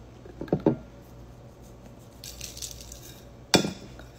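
Handling of a plastic-wrapped pickle and the items on a plate: a soft crinkle of plastic a little past halfway, then one sharp clink against the plate near the end.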